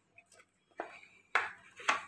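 Small plastic spice spoon knocking against hard cookware: a couple of faint clicks, then three sharp knocks about half a second apart, the last one the loudest.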